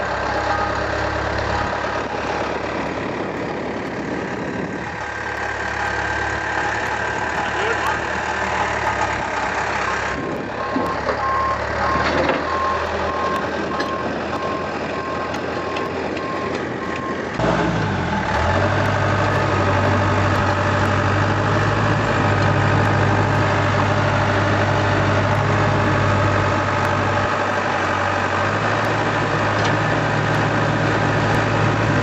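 Diesel engine of a Case crawler machine running steadily, with a rapid high-pitched beeping from about ten to seventeen seconds in. Near the middle the engine note changes abruptly to a louder, deeper, steady hum.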